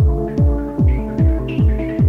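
Electronic dance music from a DJ set: a deep kick drum on every beat at about 150 beats a minute, each dropping in pitch, over held synth tones. A higher synth line comes in about halfway through.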